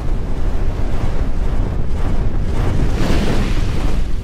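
Intro sound effect for an animated logo: a loud, steady, rushing rumble like wind, swelling into a brighter whoosh about three seconds in.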